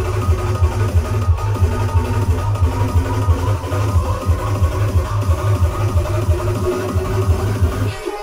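Electronic dance music played loud over a club sound system from a DJ's CDJ decks, with a heavy, pulsing bass line and sustained melodic lines above it.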